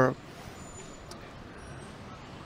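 Faint, steady outdoor city background noise, a low hum of distant traffic, picked up by a street interviewer's microphone in a pause between answers. A man's voice trails off right at the start.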